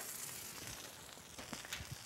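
Crab cakes frying in a skillet, a faint steady sizzle, with a few faint knocks near the end as a baking pan is handled at the oven.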